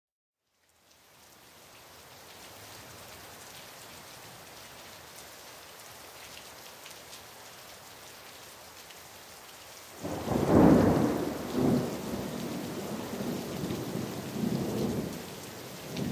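Steady rain that fades in over the first couple of seconds, then a sudden loud clap of thunder about ten seconds in that rumbles on in several swells for about five seconds.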